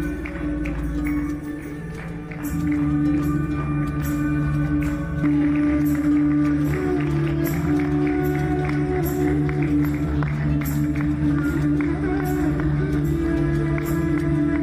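Instrumental music with a steady held drone under a melody and light percussion ticking about twice a second; it dips briefly near the start and comes back in fuller after about two seconds.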